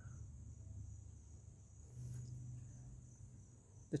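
Crickets trilling faintly and steadily, one unbroken high-pitched note, over a low hum.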